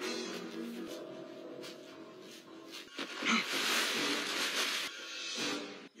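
Tense film score holding several sustained low notes, with a loud hissing, rustling swell starting about three seconds in and lasting nearly two seconds.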